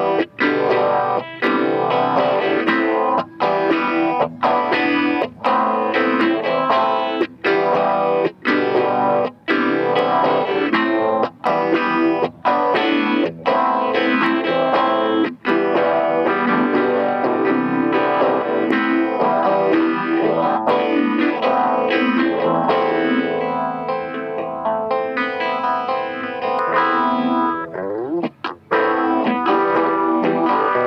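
Semi-hollow electric guitar with a Bigsby vibrato played through effect pedals: chords and notes with frequent short breaks between them. Near the end the tone sweeps up and down as the pedal settings are changed.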